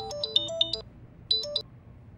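Mobile phone ringtone signalling an incoming call: a quick electronic melody of short beeping notes that breaks off under a second in, with one more brief snatch of notes about a second and a half in.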